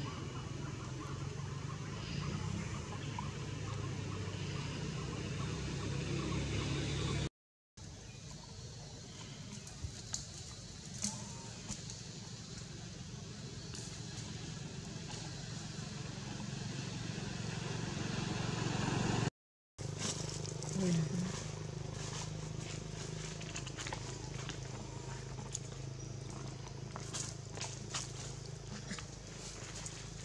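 Steady outdoor background noise with faint distant voices, broken twice by brief dropouts to silence, and scattered sharp crackles that grow more frequent in the last third.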